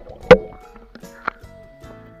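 Background music with steady sustained tones, cut through by a sharp, loud knock about a third of a second in and a softer one about a second later.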